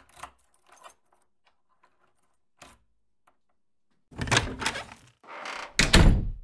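A key being worked in a door lock: a few faint metallic clicks and rattles. About four seconds in, louder rattling and scraping follow as the door is unlocked and pushed open.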